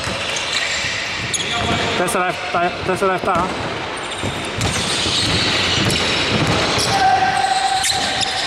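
Basketball bouncing on a hardwood court in a large, echoing hall, with players' voices and a brief call of the score partway through.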